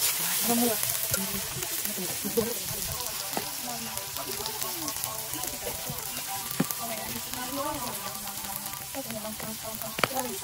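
Greens and chillies sizzling in hot oil in a frying pan, stirred with a utensil that now and then clicks against the pan.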